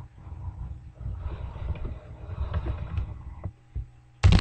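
Handling noise from a webcam's microphone as the computer it sits on is carried across the room: irregular low rumbling and soft knocks, easing off near the end.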